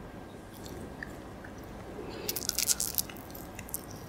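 Close-miked chewing of Yupi gummy candy: soft, sticky mouth clicks and smacks, coming in a quick cluster about two to three seconds in, with a few more near the end.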